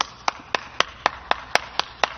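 One person clapping hands steadily, about four claps a second.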